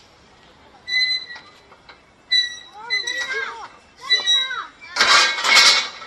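Children shouting and squealing: high steady squeals about a second in and again a second or so later, then gliding cries, and a loud harsh burst of noise near the end.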